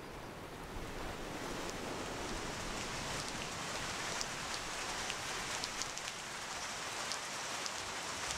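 Steady hiss of rain, with scattered sharp drop ticks that start about a second and a half in and come more often later.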